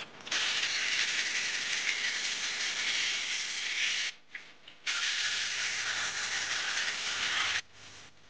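Wet sandpaper held against a resin-and-wood goblet blank spinning on a lathe: a steady hiss for about four seconds, a short break, then nearly three seconds more.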